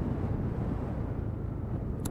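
Steady low wind and road rumble from a Lexmoto Diablo 125cc scooter being ridden, with wind on the microphone.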